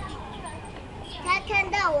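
Speech: a young child's high-pitched voice calls out in a few short bursts in the second half, over low background.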